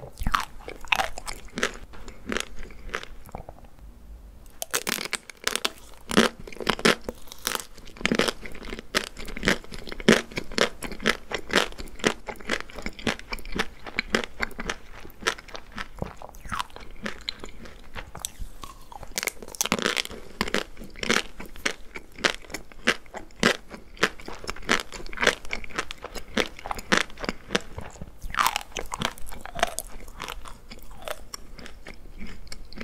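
Close-miked eating of chocolate-coated desserts: crisp crunching of chocolate coating and wet chewing, a dense run of small cracks and smacks with a brief lull about three seconds in.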